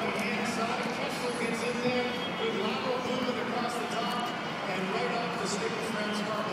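Crowd of people outdoors talking and calling out at once, a steady babble of many overlapping voices.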